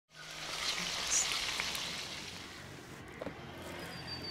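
Food frying in hot oil, a steady sizzle that eases a little after about two seconds, with one short high chirp about a second in.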